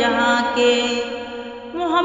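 A voice singing an Urdu naat holds the last note of a line, which slowly fades. A new sung phrase begins near the end.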